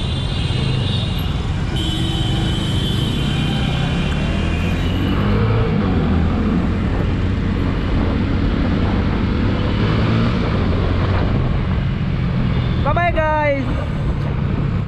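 Motorcycle running through heavy city traffic, with engine, road and wind noise picked up by a camera on the moving bike. A brief voice sounds near the end.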